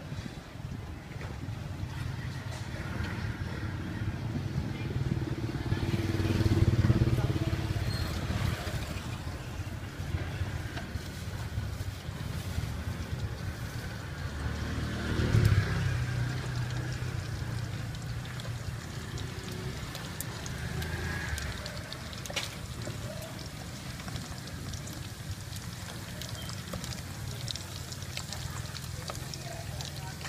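Street traffic: a low rumble with two motor vehicles passing, the first swelling and fading about a quarter of the way in, the second a little past halfway.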